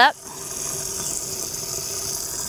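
Garden hose running water straight into the fill tube of a self-watering AquaPot planter: a steady hiss of water filling the reservoir.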